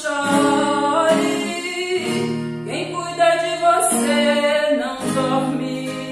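A woman singing a Portuguese gospel hymn, accompanied by a strummed acoustic guitar.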